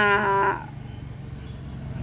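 A woman's drawn-out hesitation vowel, held for about half a second while she searches for a word, then only a low steady background hum.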